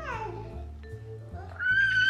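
Baby squealing over background music: a high cry slides down at the start, then a loud, long, high-pitched squeal begins about one and a half seconds in.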